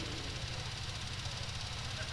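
Steady low hum with a faint even hiss, a constant mechanical-sounding drone with no other events.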